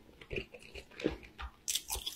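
A person chewing a mouthful of food close to the microphone, with irregular soft clicks and smacks of the mouth and a brief cluster of sharper crunching sounds near the end.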